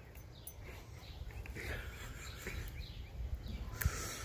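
Quiet outdoor background: a low rumble on the microphone with a few faint chirps in the middle and a click near the end.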